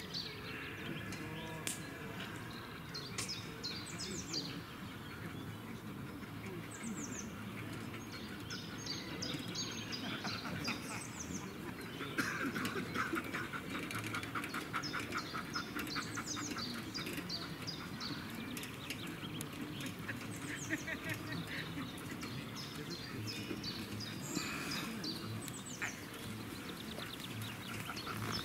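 Songbirds singing in the surrounding trees: short, high, downward-sweeping chirps repeated again and again over a steady open-air background.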